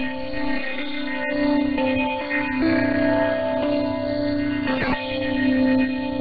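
Instrumental music from Radio Thailand's shortwave broadcast on 9390 kHz, received in synchronous AM: held notes that change every second or so, thin and muffled with nothing above about 4.5 kHz. A brief crash cuts across it about five seconds in.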